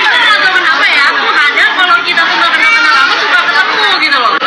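Several women talking over one another at a table: loud, overlapping conversation, thin in sound as if from a phone recording.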